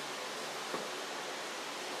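Steady, even background hiss with no distinct source, and a single small tick about three-quarters of a second in.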